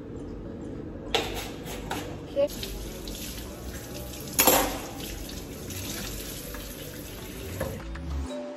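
Kitchen faucet running into a stainless steel sink while a sponge is rinsed under the stream. The water comes on about a second in and stops just before the end, with one sharp knock about halfway through.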